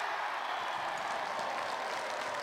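Crowd of spectators clapping and cheering after a point in a volleyball match, a dense steady clatter of many hands.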